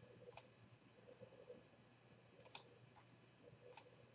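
Computer mouse clicking three times, short sharp clicks a second or two apart.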